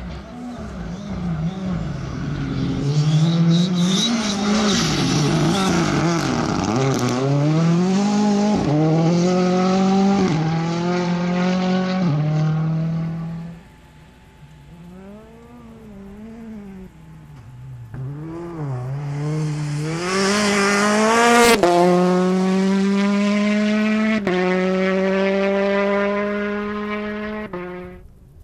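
A Ford Fiesta rally car's engine at full throttle on gravel, revs climbing and falling back with each gear change, with the hiss of tyres on loose gravel. After a sudden drop, a second rally car's engine builds up and climbs steadily through the revs, with one sharp crack partway through.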